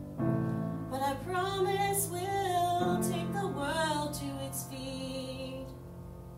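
A slow ballad sung over piano accompaniment. The sung line ends about five seconds in and the piano carries on alone.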